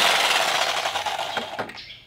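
Corded jigsaw cutting through a wooden pallet board to free a leg. Its loud noise fades away over about a second and a half as the cut finishes and the saw stops.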